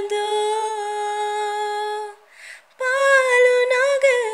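A woman singing unaccompanied. She holds one long, steady note, takes a breath a little past halfway, and then carries on into the next phrase.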